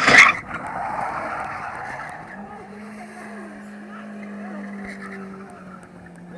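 1994 Toyota Corolla skidding, its tyres scrubbing and squealing across the tarmac. A short loud burst comes at the very start, and from about two seconds in the engine holds a steady high rev.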